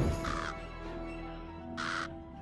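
Two crow caws, about a second and a half apart, over music with low held tones.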